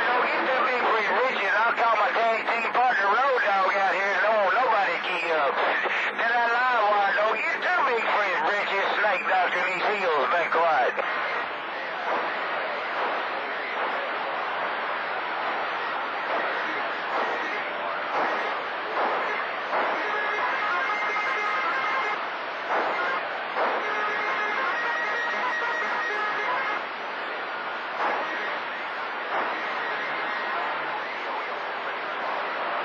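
CB radio receiver on channel 28 picking up long-distance skip: distorted, wavering voices over static hiss, strongest for the first ten seconds or so. After that the signal is weaker, with short steady whistle tones in the second half.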